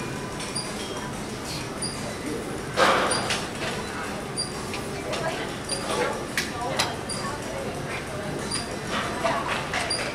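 Busy gym ambience: indistinct background voices with scattered knocks and clanks, the loudest about three seconds in.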